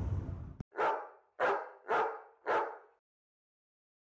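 A dog barking four times, short sharp barks about half a second apart.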